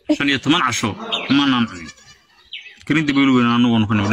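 Speech: a person talking in short broken phrases, then a long drawn-out voiced syllable held for about a second near the end.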